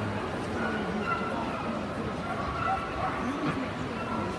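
Steady murmur of many voices in a large hall, with a dog whining in short, high drawn-out notes several times.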